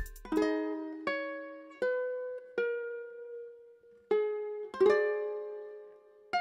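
Kala flame maple ukulele, capoed at the third fret, fingerpicked slowly: single plucked notes each left to ring out, about one every three quarters of a second. After a short pause there are two more, the loudest near the end sounding several strings together.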